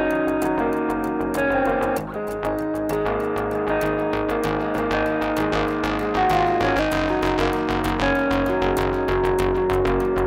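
Background music: an instrumental track led by guitar, with a steady beat.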